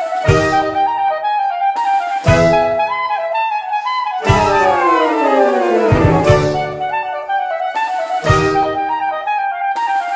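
Saxophone ensemble, soprano down to baritone saxophone, playing a lively Irish-style tune in close harmony, with a low baritone note starting each phrase about every two seconds. Near the middle, all the voices fall together in a descending run.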